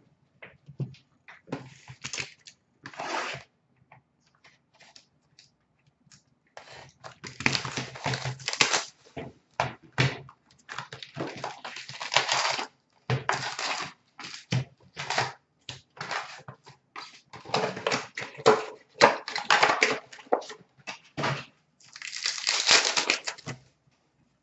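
A box of hockey card packs being opened by hand: the cardboard box torn open and the foil packs handled and torn, a long run of irregular crinkling, rustling and tearing.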